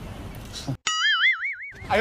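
A cartoon 'boing' sound effect: a springy, warbling tone that wobbles up and down about five times a second for roughly a second, starting just under a second in.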